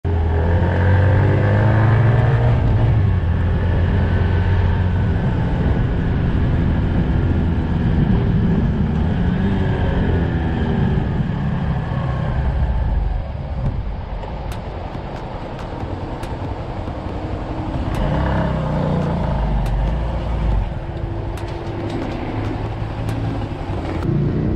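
Motorcycle engine running under way with road and wind noise, its pitch rising and falling through the gears. About 13 seconds in it gets quieter as the bike slows down, with a few light clicks later on.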